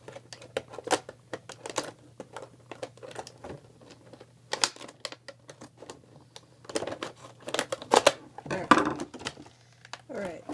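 Clear plastic packaging crinkling and crackling as it is handled and pulled out of the box, in irregular bursts that are loudest about seven to nine seconds in.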